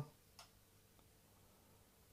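Near silence: room tone with two faint short clicks, the first about half a second in and a weaker one about a second in, from a plastic set square being handled on paper.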